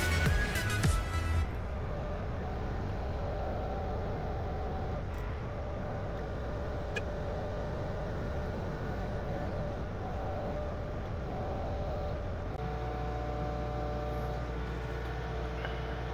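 Excavator engine running steadily, heard from the operator's cab, with background music over it. The tone of the hum changes abruptly near the end.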